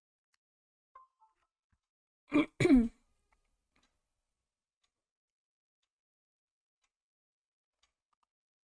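A person clearing their throat: two short rasps in quick succession, about two and a half seconds in.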